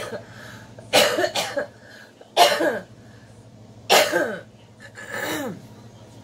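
A woman coughing several times in a row, about five coughs spaced roughly a second apart.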